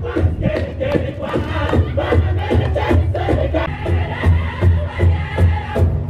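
Powwow-style Native American music for a hoop dance: a steady drumbeat with chanted singing.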